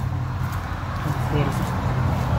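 Steady low hum of a car running, heard from inside the cabin. A voice cuts in briefly about one and a half seconds in.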